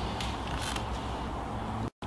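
Steady low room hum with a couple of faint short clicks in the first second, cut off abruptly just before the end.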